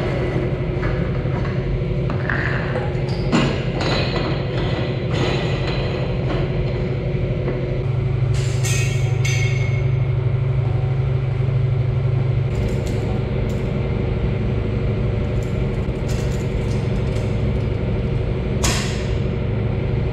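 Clanks and knocks of stainless-steel milk-line pipe and fittings being handled and fitted onto a bulk milk tank's outlet, some ringing briefly. They sound over a steady low machine hum.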